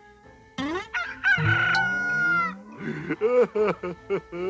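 A rooster crows once: a long cock-a-doodle-doo that rises, holds a steady note and falls away at the end. A few short, lower calls follow.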